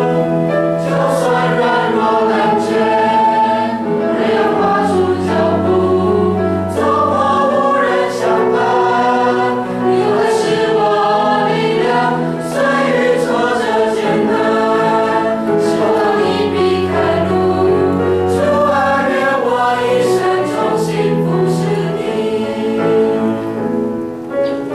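A group of voices singing a Christian worship song together in unison, over sustained low accompaniment notes.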